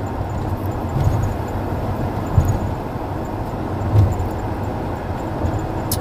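Steady low rumble inside a vehicle's cabin, swelling slightly a few times.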